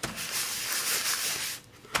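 Wads of phone-book paper rubbing over an inked, shellacked collagraph plate, wiping the surface ink off so that ink stays only in the grooves (intaglio wiping). The papery rubbing is steady for about a second and a half, then stops, with a short knock just before the end.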